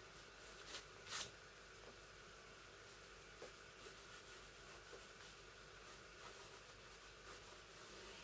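Near silence with faint pencil strokes scratching on paper, and a short soft click about a second in.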